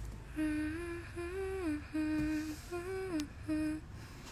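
A woman humming a short tune softly with her mouth closed, in about six brief held notes that glide up and down in pitch.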